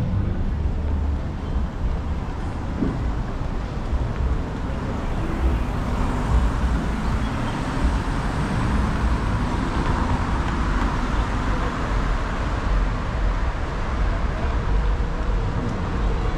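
Steady road-traffic noise with vehicles going by, fuller through the middle stretch.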